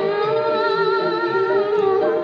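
Song playing for a dance: a singer holds one long, slightly wavering note over a steady drum beat, then moves into a new ornamented phrase near the end.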